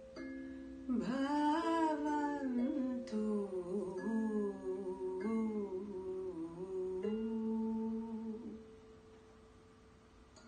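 A voice hums a slow, wavering melody over sustained, ringing instrument notes. The humming stops about a second and a half before the end, leaving the instrument notes fading quietly.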